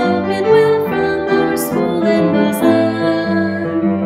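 School song sung to piano accompaniment, a melody of held notes over the piano.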